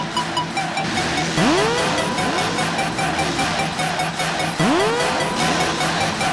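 Electronic background music with a steady beat, over which a Suzuki motocross bike's engine revs up twice, once about a second and a half in and again near four and a half seconds. Each rev rises quickly in pitch, then holds.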